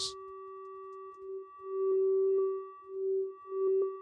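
A self-oscillating resonant filter, pinged by a short burst of white noise, sustains a steady pitched tone with a few overtones from its morph mode. About a second in, the tone starts swelling and fading in uneven pulses, with a few faint clicks.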